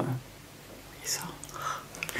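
A woman's voice saying a single soft, almost whispered word about a second in, over a quiet room.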